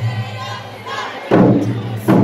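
Ensemble of Japanese taiko drums: a brief break in the playing, then a loud strike on the drums just over a second in, its low tone ringing on after it.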